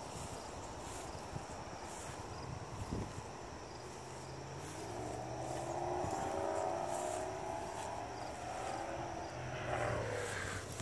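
A distant engine drone swells in from about four seconds in, a steady low hum with higher tones drifting slightly in pitch, over a low rushing noise.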